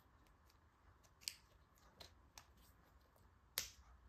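Faint, sparse clicks and taps, the loudest shortly before the end, from a soft rubbery jelly sandal's strap being fastened by hand over otherwise near silence.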